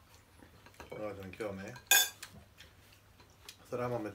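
Eating utensils clinking and scraping against bowls at a meal, with one sharp, bright clink about two seconds in.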